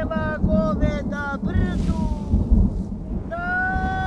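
A high-pitched voice calling out words to cattle in a chant of short held syllables, then one long held call near the end. A steady low rumble of wind on the microphone runs underneath.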